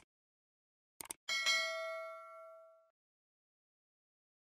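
Subscribe-animation sound effects: a short mouse click at the start and a quick double click about a second in, followed by a bright bell ding that rings out and fades over about a second and a half.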